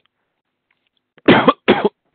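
A man coughing twice in quick succession, loud and close, about a second and a half in, after a short silence.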